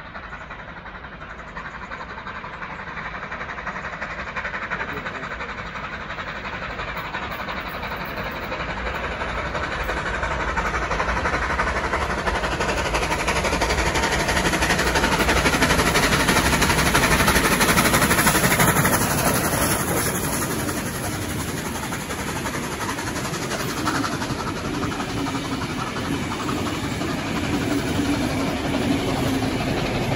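Steam locomotive 3526 hauling a heritage passenger train along the line: a rumble of running gear and wheels on rails that grows steadily louder to a peak about halfway through, then settles to a steadier rolling rumble as the carriages go by.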